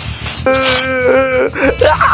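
A drawn-out wailing voice over background music. It holds one note for about a second, steps down in pitch, then wavers near the end.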